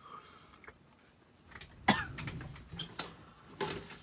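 A man gagging and coughing on a mouthful of peanut butter, close to retching: quiet at first, then a sudden loud gag about two seconds in and a few shorter coughs near the end.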